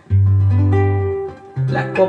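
Acoustic guitar strummed: a chord rings out for about a second and dies away, then a second chord sounds near the end.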